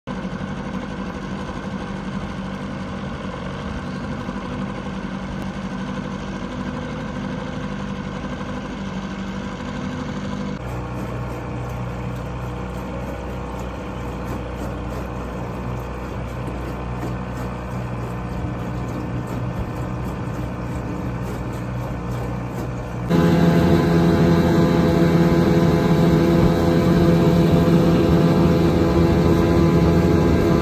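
A small boat's motor running steadily in three stretches, each with its own steady hum, changing abruptly about a third of the way in and again about three-quarters in, where it becomes clearly louder.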